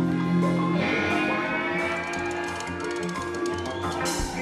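Band playing with electric guitar, bass and drums. A held low chord gives way about a second in to busier playing, with quick cymbal strokes in the second half.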